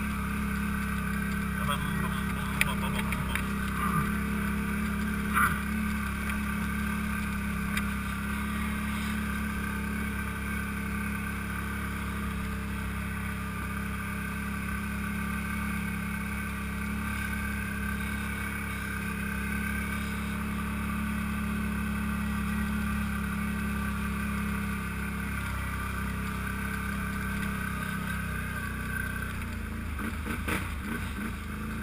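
ATV engine running steadily as the quad rides a rough dirt trail, with a few sharp knocks in the first six seconds.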